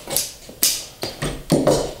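Old staples being prised out of a chair seat's wooden frame with a flat metal upholstery tool: several sharp clicks and snaps about half a second apart.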